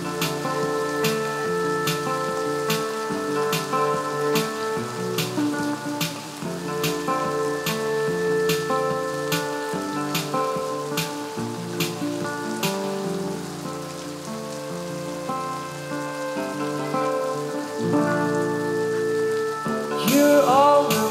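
Solo acoustic guitar played fingerstyle, an instrumental passage of picked notes, about three a second, ringing over one another. It grows softer for a few seconds in the second half.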